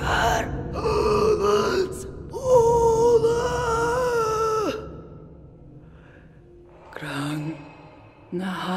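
Unaccompanied female voices in a contemporary vocal work: a breathy gasp, a short gliding vocal sound, then one high note held steady for about two seconds that stops abruptly, and near the end a brief low voiced sound.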